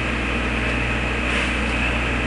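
Steady low hum with an even hiss underneath: constant background room noise.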